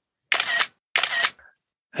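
A camera shutter sound, fired twice about two-thirds of a second apart, each a short, crisp snap.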